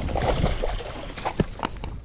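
Water splashing as a hooked fish thrashes at the surface beside a kayak, with a few sharp clicks in the second half.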